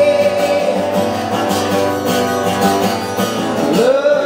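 Acoustic guitar strummed in a steady rhythm. A man's sung note trails off at the start, and his voice comes back in near the end.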